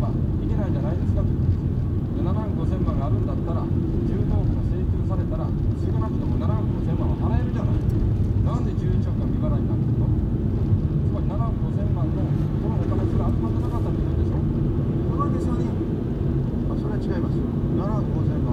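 Steady low rumble of a car's engine and tyres on a snow-packed road, heard from inside the cabin, with a man's voice from a radio talk broadcast going on underneath throughout.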